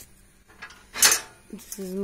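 A single short, sharp clatter about a second in, like hard objects or metal knocking together; a woman's voice follows near the end.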